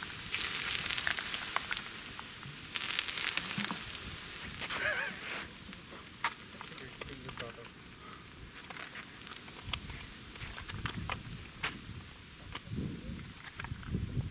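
Water poured onto a hot rifle suppressor on an AK-74, sizzling and hissing as it boils off. The suppressor is still too hot to touch after firing. The hiss is strongest over the first few seconds, then dies down to scattered crackles and ticks as the can cools.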